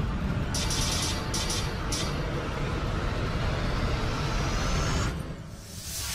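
Cinematic intro music sting under an animated logo: a heavy, steady low drone with a few short high sound-effect hits early on, and a faint rising tone that builds and then cuts off suddenly about five seconds in, followed by a brief swoosh near the end.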